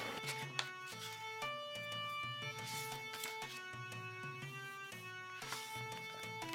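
Quiet background music: a slow melody of held notes changing pitch about every half second to a second.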